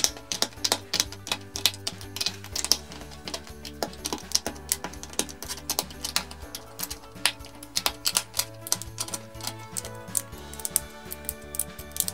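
Background music with many rapid, irregular clicks from plastic LEGO bricks being handled and pressed together.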